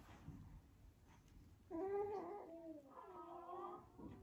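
A baby makes two drawn-out, whiny vocal sounds, one after the other in the second half. The second wavers up and down in pitch.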